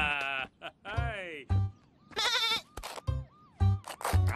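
Voiced cartoon sheep bleating: two wavering, falling bleats in the first second and a half, then a higher quavering call about two seconds in. Background music with a regular low beat plays underneath.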